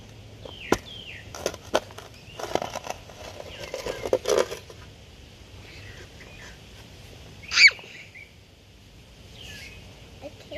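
Steel spade digging into yard soil: a run of strokes as the blade chops and scrapes through the dirt, through the first half. Near the end comes a brief high squeal, the loudest sound, with faint bird chirps behind.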